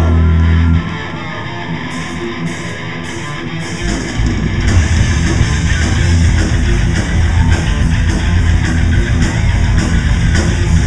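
Thrash metal band playing live, loud distorted electric guitars: a held chord cuts off about a second in, a quieter guitar part with a few cymbal taps follows, then the drums and full band come back in about four seconds in.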